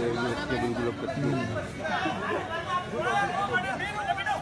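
Several people's voices talking over one another: unclear chatter with no distinct words.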